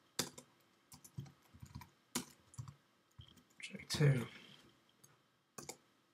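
Computer keyboard typing: scattered single key clicks at an irregular pace. A short vocal sound, like a murmured "um", comes about four seconds in.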